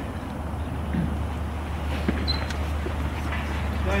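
Outdoor ambience with no voices: a steady low rumble, with a few faint clicks and knocks about two seconds in.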